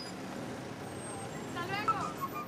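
Street traffic noise, a steady background of vehicles, with a person's voice heard briefly near the end.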